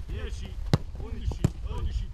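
Football struck on a grass pitch in a quick passing drill: two sharp kicks less than a second apart, with players' voices calling between them.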